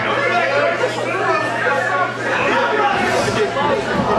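Many overlapping voices of a small indoor crowd talking and calling out, with no single clear speaker, over a steady low electrical hum.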